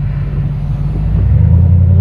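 Ford Bronco's engine running, heard from inside the cabin; about a second in its note deepens and grows louder.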